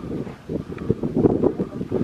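Wind buffeting the microphone: a gusty low rumble that eases briefly about half a second in, then picks up again.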